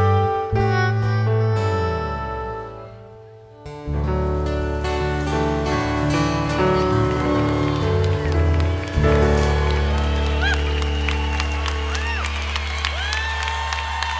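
Live band with guitars playing a song's instrumental ending: it drops away about three seconds in, then comes back on a long held final chord. Audience clapping and whistling start about nine seconds in and carry on over the fading chord.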